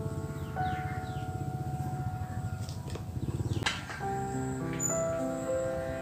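Background music of held, sustained notes that change pitch in steps, with a few faint chirps about a second in.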